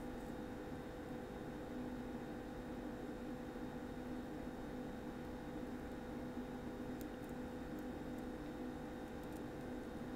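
Quiet room tone: a steady low hum under a faint hiss, with one faint tick about seven seconds in.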